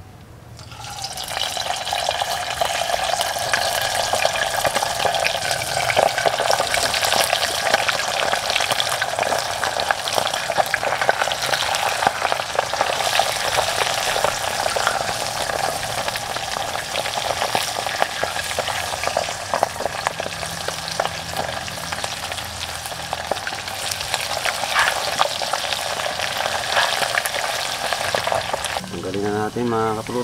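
Pieces of boiled pork intestine deep-frying in hot oil, the oil sizzling and crackling hard. The sizzle starts as the pieces go in and builds over the first two seconds, then keeps going steadily.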